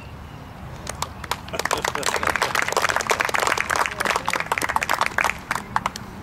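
An audience clapping: a patter of hand claps that starts about a second in, grows to a steady round of applause, and dies away just before the end.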